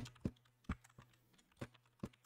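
Faint computer keyboard keystrokes: about five separate key presses at an uneven, unhurried pace.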